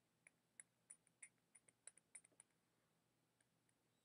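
Near silence, with faint light clicks, about four a second, over the first two and a half seconds, then stillness.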